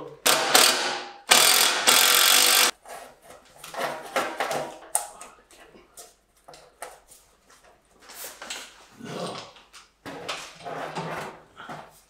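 Sheet-metal dust-extraction pipe being handled and fitted together: metal scraping and clattering, loudest in a harsh scrape lasting over a second near the start, then scattered knocks.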